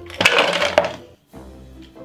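Pieces of Valrhona Jivara 40% milk chocolate tipped into a small stainless steel saucepan: a short clattering rattle lasting under a second, beginning about a quarter second in.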